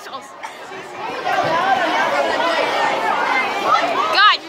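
Lunchroom chatter: many children talking at once in a school cafeteria, a jumble of overlapping voices that grows fuller about a second in.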